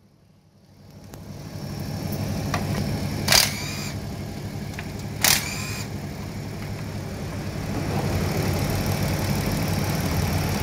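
Hyundai Grandeur XG's gasoline V6 engine idling steadily, heard under the open hood. Two brief high-pitched squeaks come through it about two seconds apart, near the middle.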